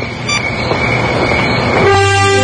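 A steady rushing noise with a thin high tone, growing louder, then sustained music chords come in near the end.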